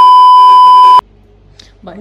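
Edited-in test-card tone: a loud, steady, high beep lasting about a second that cuts off suddenly, followed by faint room noise.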